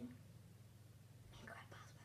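Near silence: room tone with a low steady hum, and a brief faint whisper about one and a half seconds in.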